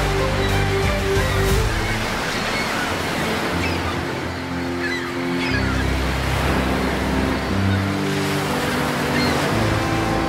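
Ocean surf washing and breaking steadily, under background music with long held low notes.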